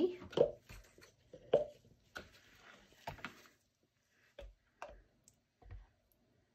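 Plastic soap-making containers being handled on a stone countertop: a series of separate light knocks and clicks spread over several seconds, with a short soft hiss between two of them.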